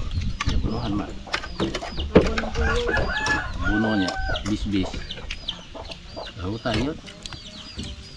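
Chickens clucking on a farm, with a rooster crowing around the middle. High, repeated chirps and a few light clicks run underneath.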